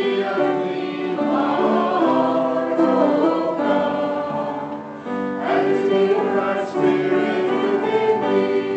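A congregation singing a gospel hymn together, many voices holding long notes, with a brief break between phrases about five seconds in.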